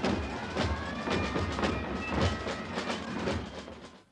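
Carnival marching music of drum strokes with high fifes or piccolos playing a melody over them. It fades out near the end.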